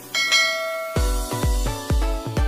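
A bright bell-like notification chime rings out at the start, the kind of sound effect laid on a subscribe-bell animation. About a second in, electronic dance music with a deep bass beat, about two beats a second, kicks in.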